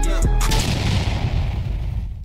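Outro music that stops about half a second in on a heavy boom, whose deep rumbling tail slowly fades away.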